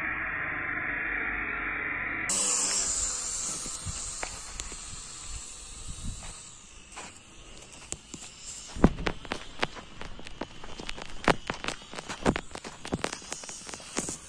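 Small toy quadcopter's propellers whirring at full throttle as it lifts off and climbs away, the whir slowly fading as it gains height. In the second half, irregular sharp knocks and scuffs.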